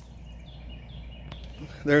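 Quiet outdoor background with a steady low hum and a few faint high chirps, opened by a single sharp click.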